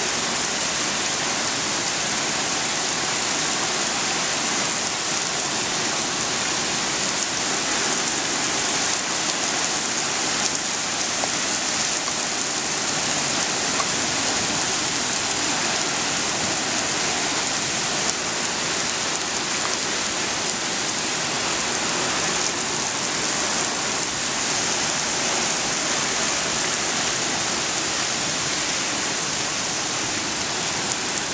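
Heavy rain falling steadily: a loud, even hiss with no letup.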